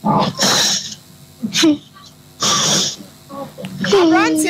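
A person's voice in loud, breathy bursts: one at the start and another about two and a half seconds in, with short voiced sounds between.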